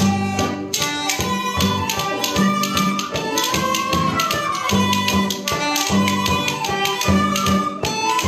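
Irish traditional ensemble playing a mazurka: tin whistles carry the melody over banjo and guitar, with a steady beat from a bodhrán.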